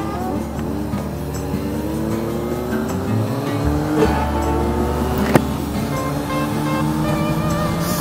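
Kawasaki ZRX1100's inline-four engine pulling away under acceleration, its pitch climbing steadily with a shift about four seconds in, under background music.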